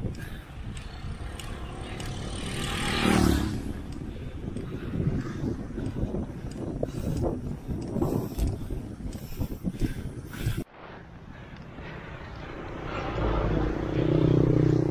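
Wind buffeting the microphone of a camera carried on a moving road bike, over tyre and road noise, swelling about three seconds in. It cuts off suddenly about ten and a half seconds in, giving way to quieter road noise that builds again near the end.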